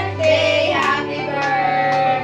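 Singing over music: a sung melody with long held notes over a steady instrumental backing.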